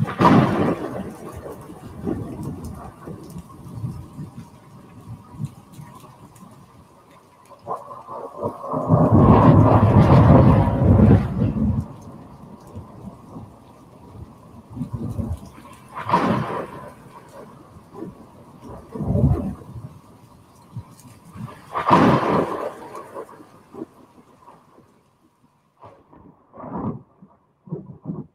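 Soundtrack of an LED light-sculpture video: a series of deep rumbling swells and booms, the loudest lasting a few seconds about nine seconds in, over a faint steady tone. It fades out near the end.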